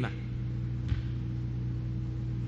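Steady low hum with a faint, short click about a second in.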